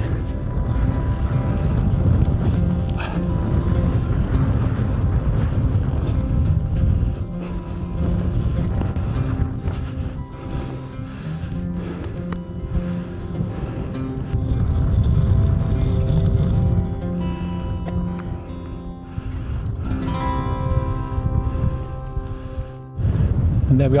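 Background music with sustained notes changing every second or two.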